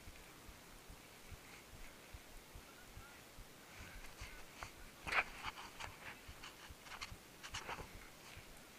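Faint footsteps of a runner moving over leaf-covered woodland ground, with a few sharper crunches about five seconds in and again near the end.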